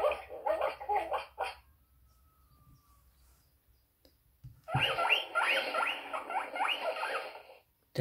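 Recorded dogs barking from a children's sound book's button, for the first second and a half. After a pause, a recorded guinea pig squeaking, a quick run of short rising squeaks about three or four a second for about three seconds, played through the book's small speaker.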